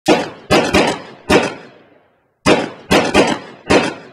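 Intro sound effect of loud, sharp impact hits, each with a short fading tail: four hits in quick succession, a brief silence, then four more.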